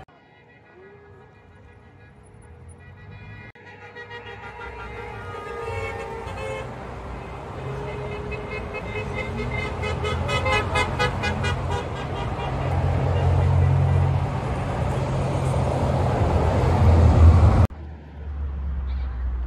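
City street traffic: cars driving past, the engine and tyre noise growing steadily louder and loudest near the end, where it cuts off suddenly.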